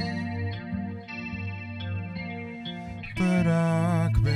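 Live band playing a slow ballad: electric guitar with effects over bass, keyboard and drums. About three seconds in, the music gets louder and a male voice comes in singing a held note with vibrato.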